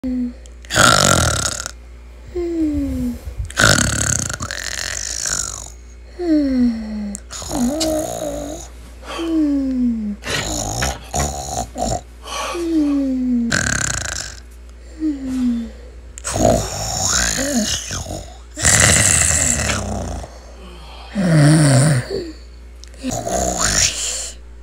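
Exaggerated comic snoring: loud rasping snores, each followed by a short whistle that falls in pitch on the out-breath, repeating every two to three seconds.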